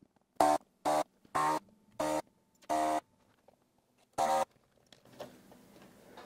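Vacuum desoldering gun's pump buzzing in six short bursts, the last after a longer pause, as it sucks solder off the pins of an STK-0050 Darlington power pack.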